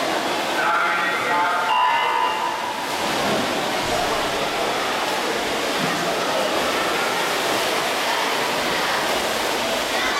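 Reverberant indoor swimming-pool din: water splashing from swimmers racing and a steady hubbub of voices echoing in the hall. A pitched tone sounds for about two seconds near the start.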